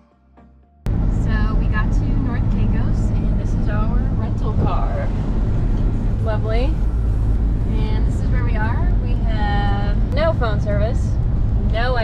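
A car driving on an unpaved dirt road, heard from inside the cabin: a loud, steady low rumble of road and engine noise, with people talking over it. Quiet music plays first and cuts off abruptly about a second in, when the rumble starts.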